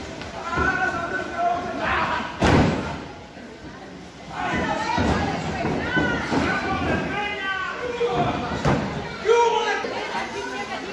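Wrestlers' bodies hitting the ring mat with heavy slams, the loudest about two and a half seconds in and another near the end, amid voices shouting from ringside.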